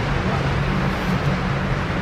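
Steady low hum with a rushing air noise, from the ventilation of an indoor shooting range.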